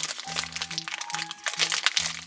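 Crinkling of thin pink wrapping being pulled open by hand, over background music of short repeated notes.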